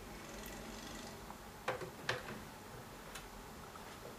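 Quiet room with two sharp knocks about half a second apart near the middle, and a fainter click about a second later.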